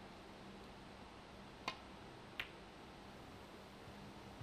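Snooker cue tip striking the cue ball, then about three-quarters of a second later the cue ball clicking softly against a red: two short sharp clicks over a faint steady hum.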